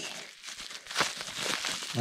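Plastic bubble-wrap packaging crinkling and crackling as it is pulled and worked open by hand, with a sharper crackle about a second in.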